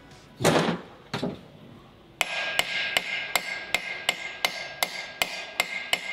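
A mallet beating on the flywheel puller of a Mercury Pro XS 250 two-stroke powerhead: about a dozen quick, even blows at nearly three a second, with the steel ringing under them, trying to shock the flywheel off the crankshaft. It does not budge, because the flywheel has fused onto the crank. A short loud rush of noise comes about half a second in, before the blows start.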